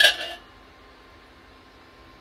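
A single sharp metal clink with a brief ring, cookware knocking on the stainless steel stockpot. After it comes a faint steady hum.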